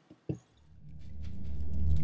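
Low rumbling drone fading in from about half a second in and growing steadily louder, with faint metallic jingling above it: the opening of a film soundtrack. Two faint short clicks come just before the drone starts.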